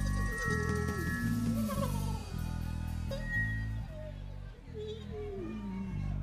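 Live funk band playing: held chords over a bass line that changes every second or so, with a sliding, wavering melody line on top.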